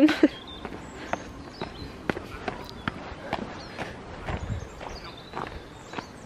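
Footsteps going down stone steps: irregular taps and gritty scuffs of trainers on loose grit, about two a second.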